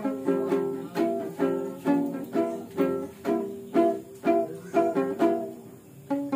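Ukulele strummed in a steady rhythm, chords ringing out with about two strong strums a second.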